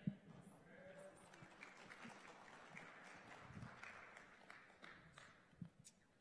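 Faint scattered applause from a congregation, lasting about five seconds and dying away near the end. A short knock at the very start.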